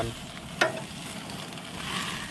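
Beef short ribs sizzling as they sear over a hot wood fire on the grill grates, with a single sharp click about half a second in.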